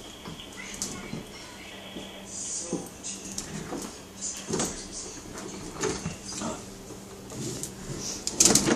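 A toddler's short babbling sounds, over scattered clicks and knocks from a plastic ride-on toy car being pushed along a tiled floor.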